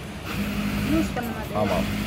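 A voice talking over a steady low hum.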